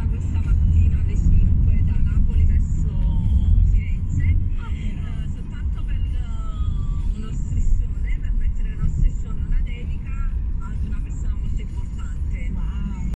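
Steady low road rumble inside the cabin of a moving car, with faint voices in the background.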